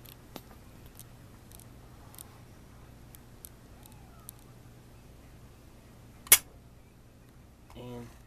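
Handling of a diecast model stock car: a few faint small clicks, then one sharp click about six seconds in, over a steady low hum.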